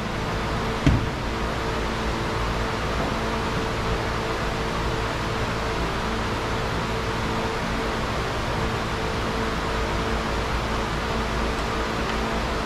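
Steady workshop background hiss with a low electrical-type hum, and a single knock about a second in.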